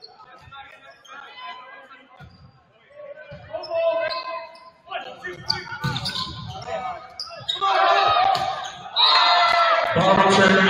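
Volleyball rally in a gym: sharp thuds of the ball being struck and hitting the hardwood, then players shouting and spectators yelling, which swell into loud cheering near the end as the point is won.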